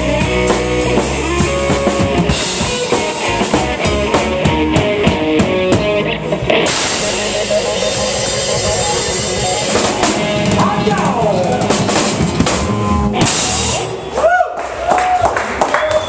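Live electric blues band, with electric guitar, electric bass and drum kit, playing the closing bars of a song, with held cymbal washes through the second half. The band stops about fourteen seconds in, and a man's voice follows.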